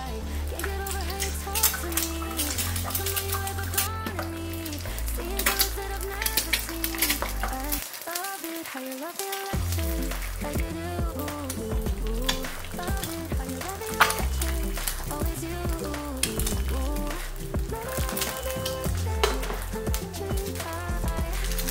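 An egg frying in oil in a preheated stainless-steel pan over medium-low heat, sizzling with frequent small pops, under background pop music.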